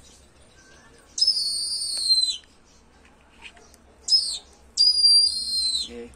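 A bird of prey giving high, shrill whistled calls: two of about a second each with a short one between, each dropping in pitch at its end.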